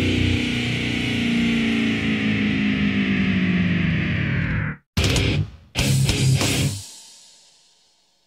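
Heavy metal band with distorted electric guitars: a held chord ends one song, cutting off sharply about halfway through. After a brief silence the next song opens with two short full-band hits, the second left to ring and die away.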